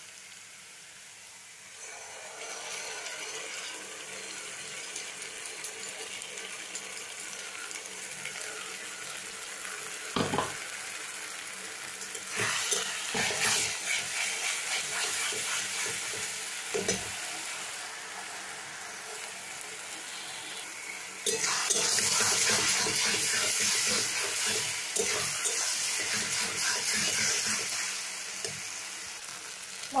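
Onions and ginger-garlic paste frying in hot oil in a karahi, sizzling steadily while a spatula stirs and scrapes, with a few knocks against the pan. The sizzle picks up about two seconds in and gets clearly louder about two-thirds of the way through.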